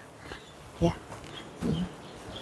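Low background with a woman's short spoken word about a second in, and another brief voiced sound near the end.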